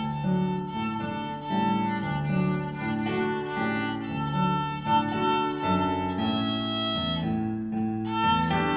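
Violin being bowed, playing a melody of connected notes that change about every half second.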